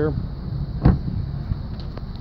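The rear passenger door of a 2011 BMW 535i being shut, a single solid thump about a second in, over a steady low rumble.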